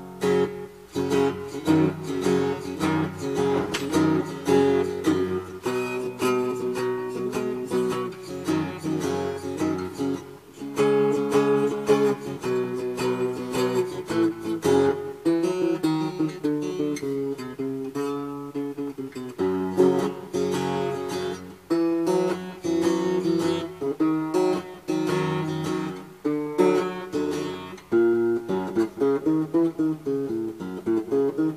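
Handmade box guitar built from a Jack Daniel's whiskey box, with twin steel soundholes, being fingerpicked in a demonstration tune: a continuous stream of plucked single notes and chords.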